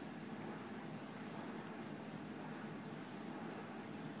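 Faint, steady wet licking of several dachshunds at a slice of watermelon, under a low hiss.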